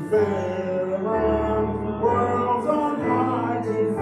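Church hymn music: sustained chords over held bass notes that change about once a second.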